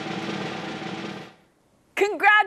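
Snare drum roll, steady and even, fading out about a second and a half in.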